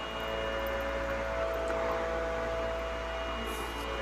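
A faint, steady background drone of a few held tones over a low hum and light hiss, with no speech.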